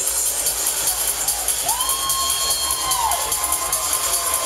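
Loud live pop music played over a PA, with a long held high vocal note a little under two seconds in and a crowd cheering.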